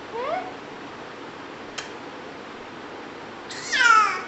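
A baby girl's vocalising: a short rising little cry at the start, then a loud, high-pitched squeal near the end that falls in pitch. A single sharp click comes in between.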